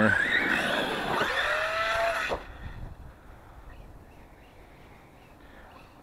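Arrma Kraton RC monster truck's brushless electric motor whining under throttle, rising in pitch twice, then cutting off suddenly about two and a half seconds in.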